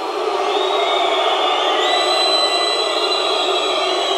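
A large crowd shouting and whistling. The noise swells over the first second and then holds steady, with several long, high whistles held over it.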